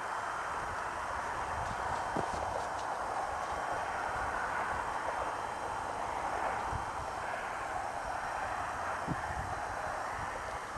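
Steady background noise with an uneven low rumble and a few faint clicks; a single short spoken "Oh" about two seconds in.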